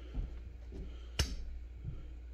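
A single sharp click about a second in, over a steady low hum; the air hammer is not running yet.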